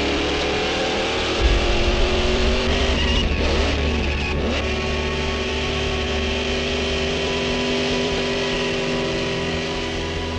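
Racing car engine running at speed on track. Its pitch dips and climbs back twice around the middle. Background music plays underneath.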